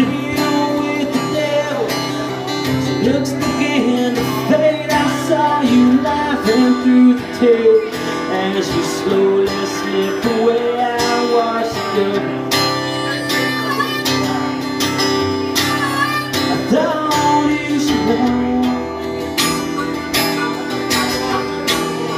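Instrumental break of a small acoustic country band: strummed acoustic guitar under a harmonica and a fiddle playing lead lines with sliding notes.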